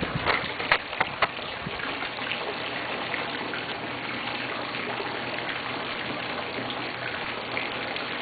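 Steady rush of water in a backyard swimming pool, with a few sharp clicks in the first second or so.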